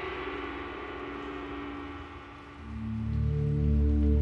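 Dramatic background score: a ringing, many-toned chord fades away, then low sustained drone tones swell in about two and a half seconds in and grow louder.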